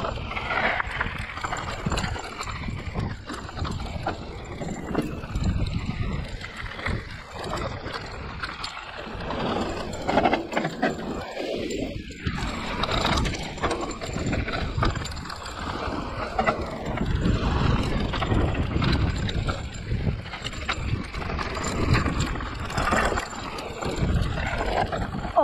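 Hardtail electric mountain bike rolling fast down a loose gravel trail: tyres crunching over stones, with the bike rattling and clattering over the rough surface and a steady rumble on the microphone. About halfway through, the wheels run briefly over wooden planks.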